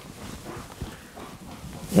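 Faint movement of a two-year-old trotter standing in its stable box, with a single low knock a little under a second in.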